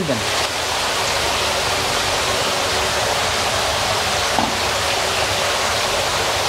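Steady rush of water running from many small pipe outlets into shallow hatchery egg trays.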